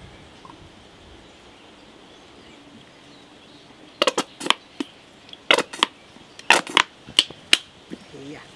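Sharp plastic clicks and knocks, about ten of them over three and a half seconds starting about halfway through, as a plastic condiment bottle with a flip cap is opened and shaken over a stainless steel salad bowl. Before that there is only a faint background hush.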